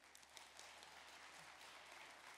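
Faint applause from a large congregation, many hands clapping steadily.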